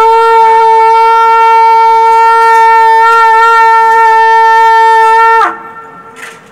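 A narsingha, a long S-curved metal horn, blown in one long, loud, steady note that drops in pitch and cuts off about five and a half seconds in.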